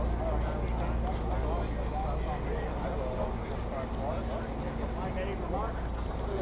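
Crowd chatter: overlapping voices of many people, none clear enough to make out, over a steady low rumble.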